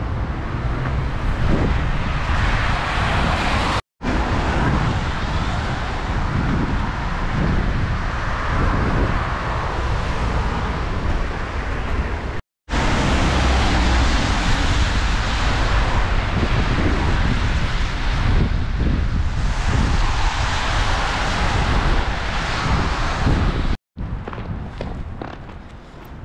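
Road traffic on a wet road: a steady noise of tyres and engines, with wind on the microphone. The sound cuts out briefly three times.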